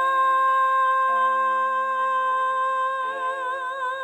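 A woman's voice holding the final sung note of the song, steady at first and then with vibrato near the end, over sustained accompaniment notes.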